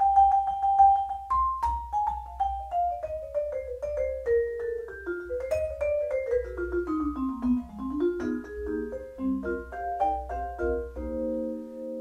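Vibraphone played with four Mike Balter Titanium Series 323R mallets: one note quickly repeated, then a long falling line of single ringing notes, then notes climbing back up and ending on a held four-note chord.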